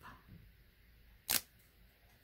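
A single short, sharp click about a second and a quarter in, against quiet room tone.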